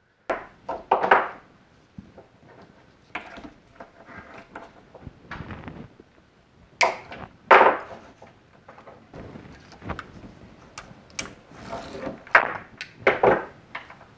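Cells and metal tabs of an old NiCad drill battery pack being pulled apart and handled on a wooden bench: irregular knocks, scrapes and clicks, the loudest about seven and a half seconds in.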